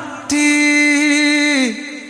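A singer in a Bollywood song holds one long note with a slight vibrato, almost without accompaniment, then lets it slide down and fade near the end.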